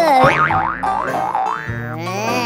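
Cartoon comedy sound effect: about five quick springy swooping tones in a row, each dipping and rising in pitch, over background music.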